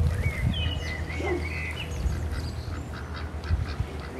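Domestic ducks calling on the water, a few short calls, with high, curving chirps in the first couple of seconds over a steady low rumble.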